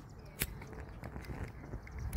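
Faint footsteps on a paved path, with one sharp click about half a second in.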